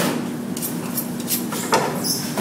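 About four short knocks and clatters on a cutting board as a large tuna and a long filleting knife are handled, over a steady low hum.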